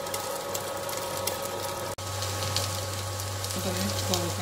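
Sliced ivy gourd frying in a lidded pan: a faint crackling sizzle over a steady hum, broken by a brief dropout about halfway through. A voice starts faintly near the end.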